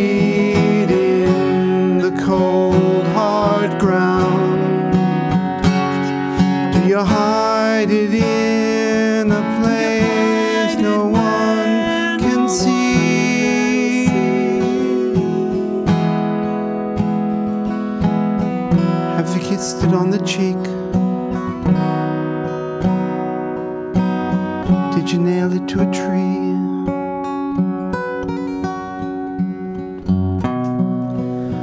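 Acoustic guitar strummed through an instrumental break between verses of a song, with a melody line that bends in pitch over it at times, most in the first half.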